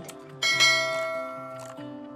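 A bell-like chime sound effect struck once about half a second in, ringing with many overtones and slowly fading, just after a short click; it accompanies the like-and-subscribe animation.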